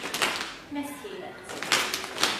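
Children's hand taps marking a steady beat, with a child's voice saying a name in the gap: a tap at the start, a short spoken word about a second in, and another tap near the end.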